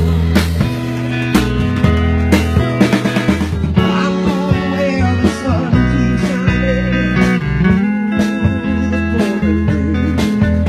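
Live band playing an instrumental passage: electric guitar with bent, gliding notes over a steady bass line and a drum kit keeping time.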